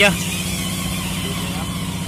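An engine running steadily at an even idle, with no change in speed.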